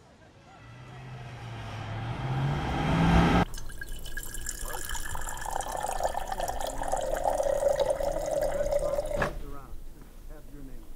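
A swell grows louder for about three seconds, a low tone climbing in pitch, and cuts off abruptly. Then water from a refrigerator door dispenser streams into a glass mason jar for about six seconds and stops sharply.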